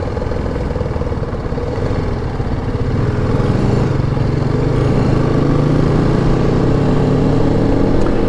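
Motorcycle engine running while riding, over a steady rush of wind and road noise. About three seconds in its pitch climbs gradually as the bike picks up speed, then holds steady.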